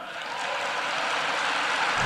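Audience applause, a dense even clatter of many hands, swelling steadily louder.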